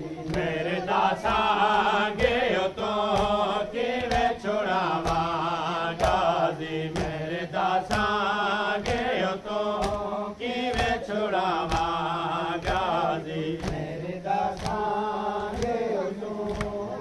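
A group of men chanting a noha, the Shia mourning elegy, together over evenly spaced beats of matam chest-beating, about two strikes a second.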